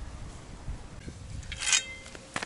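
Low, irregular rumble like wind on the microphone, with a short, loud rustling scrape about one and a half seconds in.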